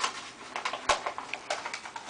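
A paper note crinkling as it is handled and rolled up by hand to go into a bottle, with a few sharp clicks, the loudest about a second in.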